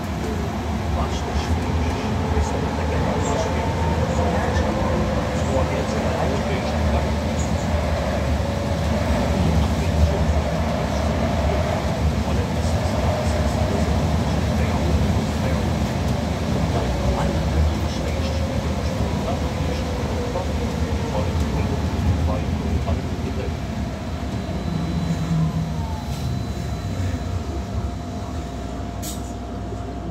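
Cabin sound of a Wright GB Kite Hydroliner hydrogen fuel-cell bus on the move: the electric drive's whine glides up and down in pitch with road speed over a steady road rumble and small rattles. It eases off slightly near the end.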